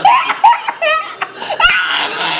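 A toddler crying angrily in short, high sobbing bursts, then a longer cry near the end.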